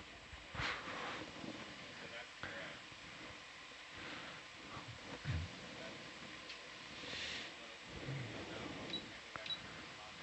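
Faint control-room background: distant, indistinct voices with small clicks and shuffles. There is a short hiss about seven seconds in and two brief high blips near the end.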